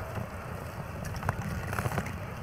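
Steady low rumble of wind and riding noise on a bicycle-mounted camera's microphone as the bike rolls along.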